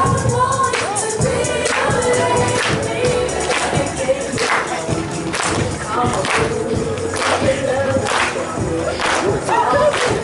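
A dance song with singing, played over loudspeakers in a large hall, with a sharp clap on each beat about once a second.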